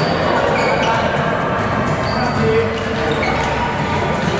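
Busy badminton hall: scattered sharp racket-on-shuttlecock hits and short squeaks of shoes on the court floor from many courts, over a babble of voices in the large echoing hall.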